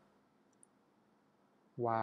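A pause in speech: low room tone with one faint, short, high click about half a second in, then a man's speaking voice starts near the end.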